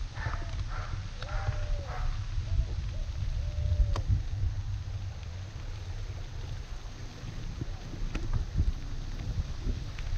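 Wind buffeting a handlebar-mounted GoPro's microphone while a mountain bike rolls over a dirt road, a steady low rumble with the bike knocking sharply over bumps, once about four seconds in and again about eight seconds in.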